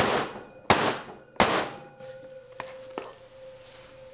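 Wooden loaf mold full of thick hot process soap banged down on a stainless steel table three times, each a sharp thunk about two thirds of a second apart, to settle the unpourable soap into the mold. A couple of lighter knocks follow, with a faint ringing tone lingering.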